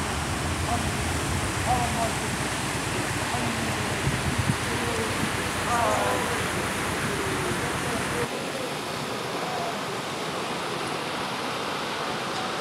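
Steady rush of the Waikare River flowing over a rapid, with scattered voices of a crowd talking. A low rumble underneath drops away suddenly about eight seconds in.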